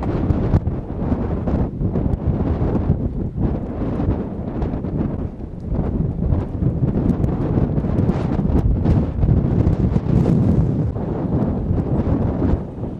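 Wind buffeting the microphone: a loud, uneven, deep rush of noise that masks other sounds.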